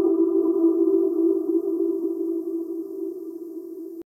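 Closing sustained synthesizer tone of a future bass track, a single held note with overtones, with no beat or vocals, fading slowly and cutting off at the very end.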